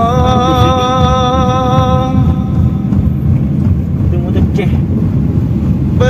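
A singing voice in a song holds one long, slightly wavering note that ends about two seconds in, over the steady low rumble of a car driving; after the note only the car's rumble remains.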